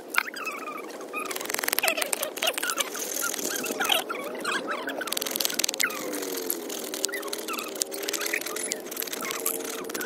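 A large knife blade shaving and scraping a thin wooden stick, in repeated short strokes. Birds chirp in the background.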